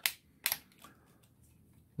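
Hard plastic clicks from a Dino Fury Morpher toy as its hinged helmet cover is flipped open: a few short, sharp clicks within the first second.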